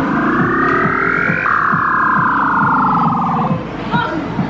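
Claw machine's electronic sound effect as the claw drops onto a plush toy: a buzzy tone rising in pitch for about a second and a half, then jumping and gliding downward until it cuts off about three and a half seconds in.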